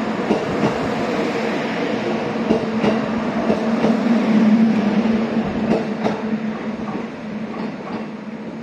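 JR Kyushu 783 series limited express train pulling away from the platform, its wheels clicking over the rail joints over a steady hum. It fades off near the end as the train draws away.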